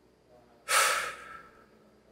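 A man's single loud exhale, a sigh or huff of breath, starting a little under a second in and fading away over about half a second.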